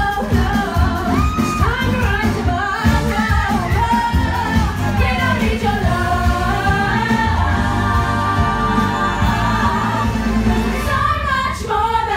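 A live pop musical number: a woman's lead vocal through a handheld microphone, with backing singers over an amplified band and a steady beat.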